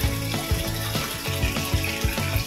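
Stream of water pouring from a pipe and splashing into a koi pond, a steady hiss, under background music with a steady beat.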